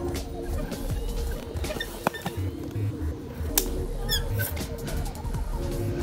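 Background music with steady held notes that change in steps and a short repeating chirping figure.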